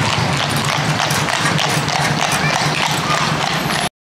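Hooves of cart-pulling horses clip-clopping at a trot on a tarmac road, many strikes overlapping, over steady street noise. The sound cuts off suddenly near the end.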